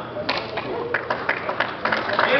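Handclaps in a large hall, a quick run of sharp claps about three or four a second, over the murmur of a crowd's voices.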